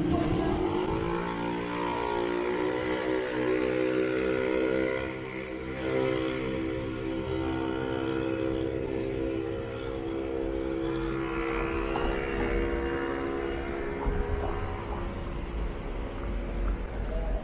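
A long, steady pitched sound with several tones sounding together. It rises briefly as it starts, then holds level for about fifteen seconds.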